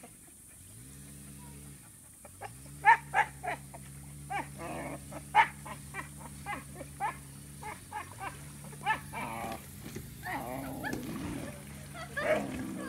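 A dog barking and yelping excitedly in a long run of short sharp barks, starting about two and a half seconds in, with a rougher, growly stretch near the end. Under it, a jet ski engine idles with a low steady hum that dips and recovers in pitch twice in the first two seconds.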